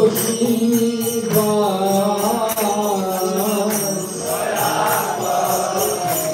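Devotional kirtan chanting: a voice sings a mantra melody, kept in time by small brass hand cymbals (karatalas) struck in a steady rhythm.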